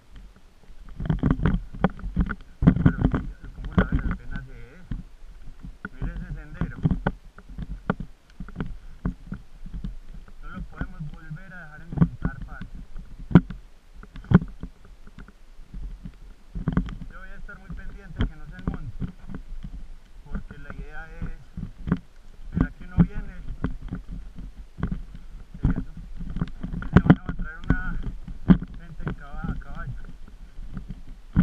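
Irregular knocks and a low rumbling of handling noise from a camera carried along a rocky dirt trail, with faint voice-like sounds now and then.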